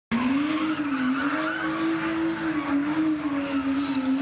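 Car engine held at high revs, its pitch wavering slightly, with tyres squealing as the car spins its wheels.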